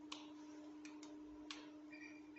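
Near silence: room tone with a faint steady hum and a few faint, irregularly spaced clicks.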